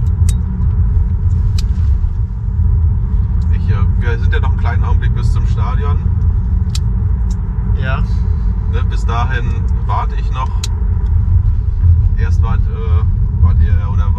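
Steady low rumble of road and engine noise heard from inside the cabin of a car being driven, with quiet talk in between.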